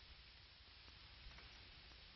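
Near silence: the faint steady hiss of an old film soundtrack, with one tiny tick about a second in.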